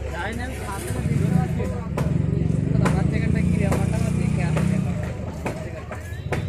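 People's voices talking in the background, with a motor vehicle engine running loudest from about a second in until about five seconds.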